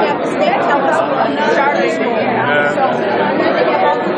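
Speech only: people talking close by over the chatter of other conversations in the room.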